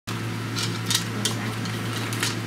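Steady low hum of room noise, with a few light clicks and rattles as small plastic parts are handled on a workbench.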